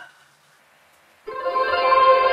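A short near-silent pause, then just past a second in a sustained musical chord comes in suddenly and holds: a reveal sting for the treasure chest being opened.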